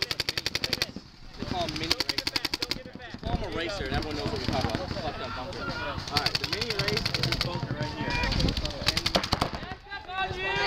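Paintball markers firing in several rapid strings of shots, each string lasting about a second at well over ten shots a second. Voices shout in between.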